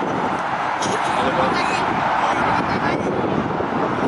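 Indistinct distant voices of players and onlookers on a soccer field, heard over a steady outdoor noise haze.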